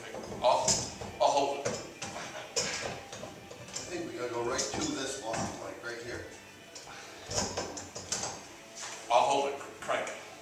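Men's voices talking indistinctly, with music in the background.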